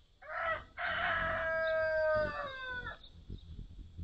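A loud bird call: a short note, then one long held note that falls in pitch at the end.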